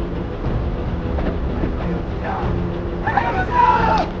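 Steady low rumble of a patrol boat's engines under film dialogue, with men's voices and a loud shout near the end.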